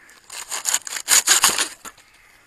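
A hand-held blade sawing through a dry, fibrous banana stalk: a quick run of back-and-forth cutting strokes from about half a second in until just before the end.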